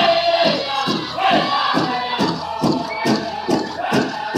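Powwow drum group: singers' voices over a steady beat on a large hand drum, a little more than two strokes a second, accompanying a women's traditional dance song.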